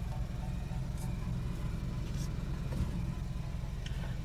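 Steady low rumble of a car cabin, engine and road noise picked up by a phone's microphone, with a few faint ticks.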